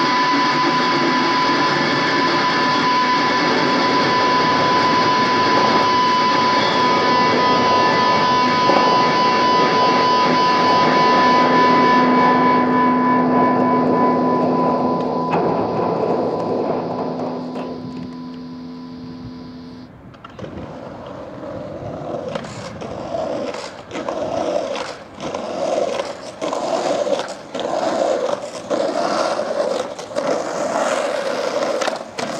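Soundtrack music of steady, droning held tones fades out over the first twenty seconds. In the last ten seconds, skateboard wheels roll over concrete, with several sharp clacks of the board.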